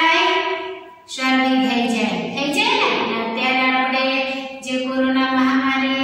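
A woman's voice singing a song or rhyme unaccompanied in long held notes that step up and down in pitch, with short breaths about one second in and near five seconds.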